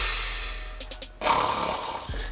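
Snoring: two long snores, the second starting about a second in, over background music.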